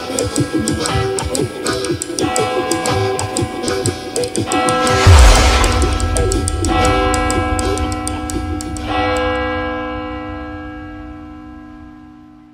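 Ending of a blues-rock song with electric guitar: fast rhythmic playing with a loud crash about five seconds in. The final chord then rings on and fades out over the last few seconds.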